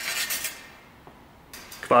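Steel military saber blades scraping along each other in a bind as a thrust goes in: a short metallic scrape at the very start, and a fainter one about a second and a half in.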